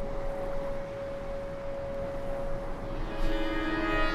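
Documentary score music: a single note held steadily, then about three seconds in a lower, fuller note with rich overtones enters and sustains.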